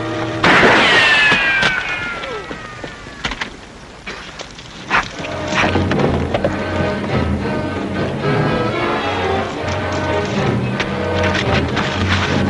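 A rifle shot about half a second in, followed by a long falling ricochet whine, over background music; a few more sharp cracks follow around two and five seconds in while the music carries on.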